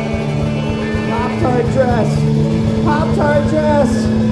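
Live rock band playing: drums, bass, electric and acoustic guitars, with a man's lead vocal coming in about a second in.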